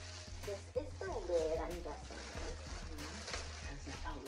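Clear plastic wrapping crinkling as it is pulled off a fish tank's black plastic lid, with a few sharp crackles, over background music with a steady low bass line.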